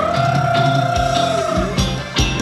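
Live band playing Thai ramwong dance music. One high note slides up and is held for about a second and a half while the drums drop out, and the beat comes back near the end.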